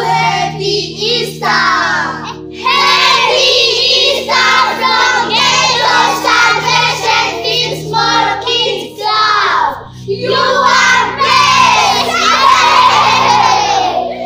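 A group of children shouting an Easter greeting together in loud, long stretches with short breaks, over background music with steady low chords.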